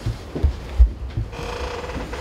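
Dull thumps and bumps of a microphone being handled and passed along. About halfway through, a steady ringing tone with overtones comes in and holds.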